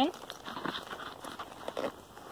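Fabric carry bag rustling, with light handling knocks, as the infiltrometer's hard-cased main unit is settled into it; the noise comes and goes, louder about two-thirds of a second in and again near the end.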